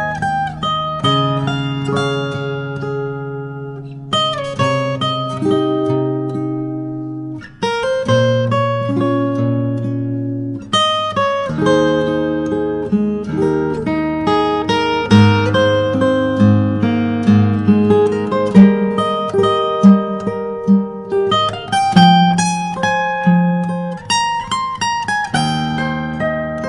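Solo fingerstyle acoustic guitar playing a slow melodic instrumental, plucked melody notes ringing over bass notes, with a couple of short breaths in the phrasing.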